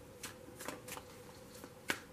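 Faint, irregular light clicks and taps from hands handling tarot cards, about half a dozen in two seconds, the loudest just before the end, over a faint steady hum.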